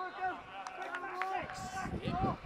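Indistinct voices of players and onlookers calling out across an outdoor football pitch, with a few short sharp knocks in the first half and a louder burst of noise near the end.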